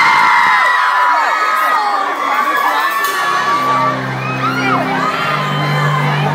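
Concert crowd of screaming fans, mostly girls, shrieking and cheering at the song announcement. About three seconds in, a low sustained chord from the band begins underneath the screaming as the song's intro starts.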